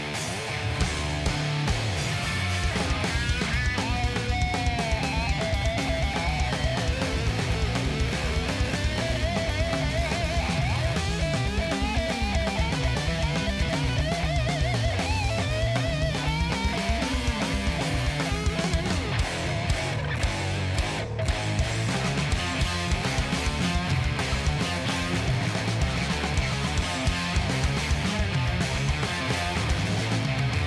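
Stoner-rock power trio playing live with no vocals: distorted electric guitar, picked electric bass and drums. A melodic guitar line with bends and vibrato runs above the riff from about four seconds in until past the middle.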